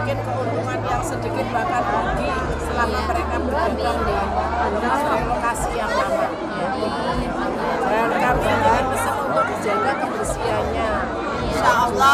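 Crowd chatter: several people talking at once at close range, with a low hum underneath that comes and goes.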